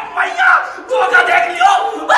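Several young men shouting and laughing together, loud and overlapping, like a rowdy group cheer.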